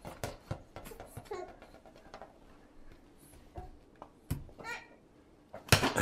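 A toddler babbling softly while handling a rubber play ball, with a few short knocks and a louder thump near the end as the ball is thrown onto the hardwood floor.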